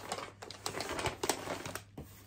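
Paper wrapping on a gift parcel rustling and crinkling as it is handled and lifted: a quick, irregular run of small crackles and taps that stops just before the end.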